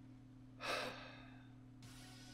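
A man's short sigh, a single quick breath out just over half a second in, over a faint steady hum.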